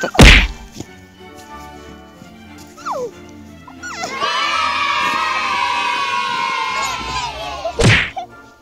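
Edited-in sound effects: a loud thump just as a child lands on a pile of snowballs, a short falling whistle about three seconds in, then a long, wavering high tone ending in a sharp hit.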